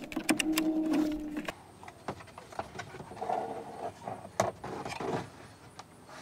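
Plastic clicks and rattles from a Ford F-150's instrument cluster: its wiring-harness connectors are unlatched and wiggled free and the cluster housing is worked out of the dash. Several sharp clicks come at irregular spacing, with a brief steady low hum over the first second or so.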